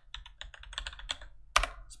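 Computer keyboard typing, a quick run of keystrokes, with one louder strike about a second and a half in.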